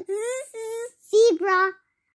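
A child's voice singing the phonics chant in three short, high held phrases.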